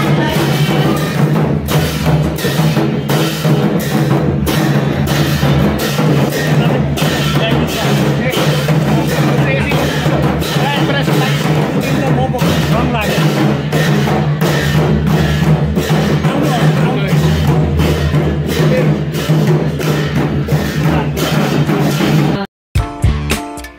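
Several large double-headed barrel drums beaten with sticks in a steady, repeating rhythm of strokes.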